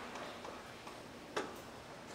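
A hushed concert hall during a pause in the music: faint rustles and small knocks from the audience and players, with one sharper click about one and a half seconds in.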